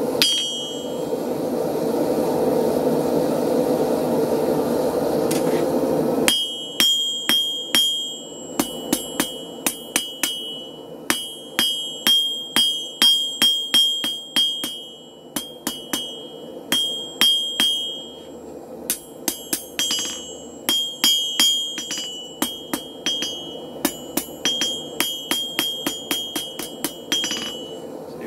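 A steady rushing burner noise, from a propane forge, for the first six seconds or so. Then a hand hammer strikes hot steel bar stock on an anvil in quick runs of about two to three blows a second with short pauses, most blows carrying a bright anvil ring, drawing the end out thin for a forged striker's coil.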